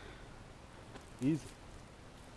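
A man's voice saying one short word, "Easy," over a faint, steady outdoor background hiss.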